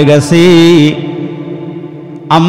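A man's preaching voice holding one long, steady chanted note for about a second in the melodic style of a Bengali waz sermon. It then fades slowly, with the note's echo trailing off through the PA.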